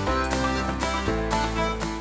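Background music: held notes over a steady beat of about two strikes a second.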